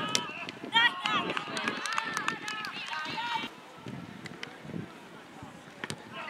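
High-pitched shouts and calls from young women on a football pitch, with a sharp thud of the ball being kicked just at the start. The voices die down after about three and a half seconds.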